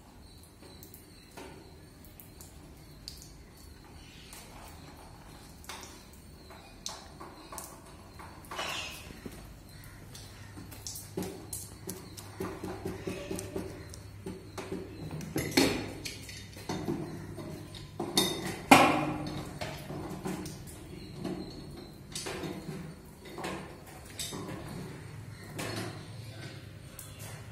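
Clicks, metallic clinks and knocks from hands working the valves and fittings on a stainless-steel RO water plant's panel, getting busier in the second half, with two louder knocks about two-thirds of the way through. A steady low hum runs underneath.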